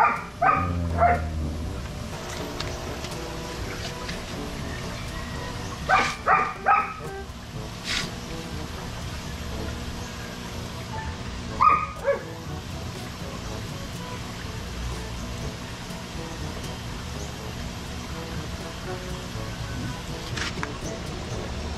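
Dog barking in short bursts: a few barks at the start, three more about six seconds in, and a single falling yelp near twelve seconds.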